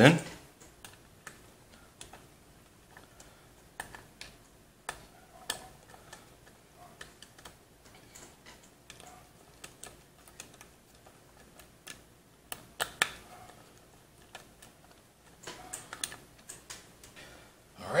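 Hand screwdriver driving screws through a metal 3.5-inch hard-drive tray into the drive: irregular small clicks and ticks of the driver tip and screws against the metal tray.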